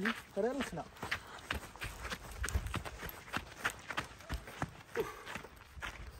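Footsteps on firm desert sand, a quick steady run of steps about three a second.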